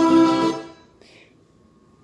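Instrumental music from a nature video playing through an iMac's built-in speakers, with long held notes, fading out about half a second in and leaving low room tone.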